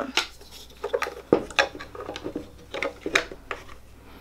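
Hard plastic casing of a letter light box being handled, giving a scattered series of sharp clicks and taps, the loudest about a second in.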